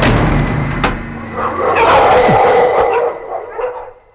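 Film background score: a short comic music cue that starts suddenly, with a sharp click about a second in, and fades out near the end.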